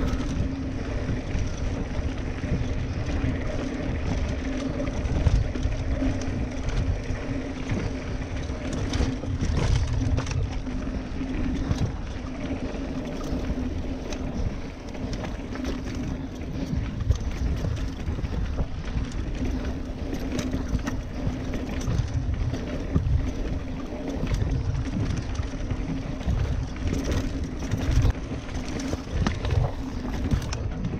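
Mountain bike ridden over a rough dirt trail, heard from a camera on the bike: a continuous wind and rolling rumble with scattered rattles and knocks from the bumps, over a steady low hum.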